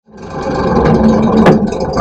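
Boat motor running steadily, fading in at the start, with one sharp click about one and a half seconds in.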